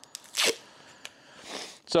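Hands picking at the end of a roll of painter's tape: a short scratchy rustle about half a second in, a small click about a second in, and a softer rustle near the end.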